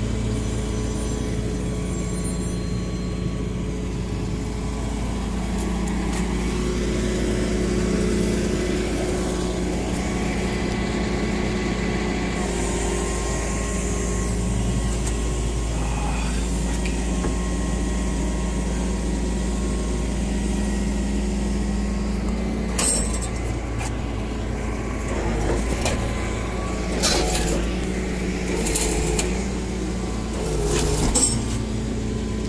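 Tow truck engine running steadily with a low drone while it pulls the car back over the concrete barrier. A few sharp knocks come near the end.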